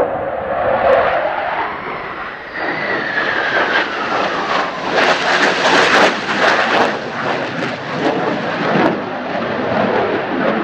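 F-4EJ Kai Phantom II jet fighter passing low overhead on its two J79 turbojets. Its whine falls in pitch as it goes by, then gives way to a loud, crackling jet roar as it moves away. Strong wind buffets the microphone throughout.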